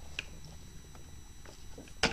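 Faint handling noise: a few small clicks and taps over a low steady hum, the clearest click just after the start.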